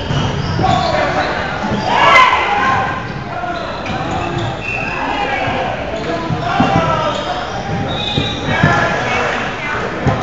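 Echoing gymnasium ambience: many players' voices chatting and calling out across the courts, with balls bouncing and thumping on the hardwood floor and a sharp smack about two seconds in.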